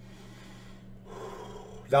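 A man taking a deep breath, a soft hiss of air that swells through the second half, over a faint steady electrical hum; his voice starts right at the end.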